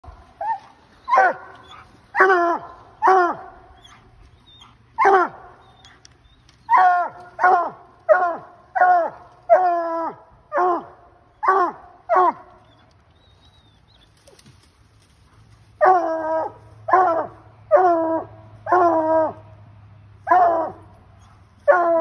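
Bluetick coonhound treeing a raccoon: loud, short barks in quick succession, each dropping in pitch, with a pause of about three seconds just past halfway before the barking resumes.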